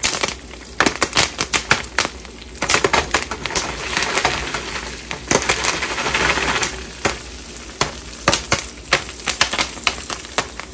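Jiffy Pop popcorn popping in its foil-covered pan over a gas burner: irregular sharp pops, one after another. In the middle the pops come thicker, with a hiss of the pan being shaken over the flame.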